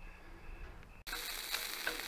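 Bacon and hash browns sizzling on a propane tabletop griddle, a steady hiss that starts suddenly about halfway in after a quiet first second.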